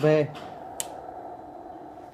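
A man says a short word, then there is steady background hum with one sharp click a little under a second in.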